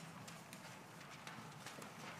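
Faint, scattered clicks and small knocks at uneven intervals over quiet concert-hall room tone, the small handling and shuffling noises of players and audience while no music is being played.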